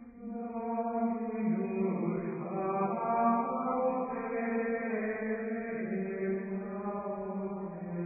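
Slow chanted singing: long held vocal notes that step slowly from pitch to pitch, swelling in just after a brief dip at the start.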